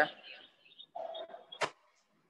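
Faint, muffled background sounds, then a single sharp click about one and a half seconds in, after which the sound drops out entirely.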